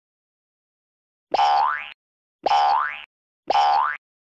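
Three identical cartoon 'boing' sound effects about a second apart, each a short springy tone gliding quickly upward in pitch.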